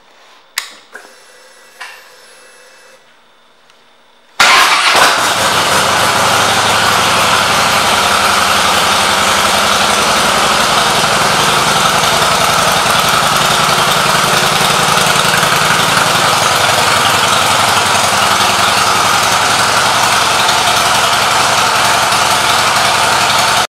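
A 2011 Harley-Davidson Softail Convertible CVO's Screaming Eagle 110 V-twin is started about four seconds in, after a few faint clicks and a brief faint whine. It then idles steadily and loudly.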